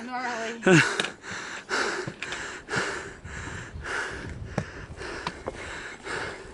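Hard, fast breathing of a hiker climbing steep stone steps, about two to three breaths a second.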